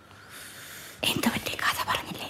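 Hushed, whispered speech begins about a second in, after a faint hiss.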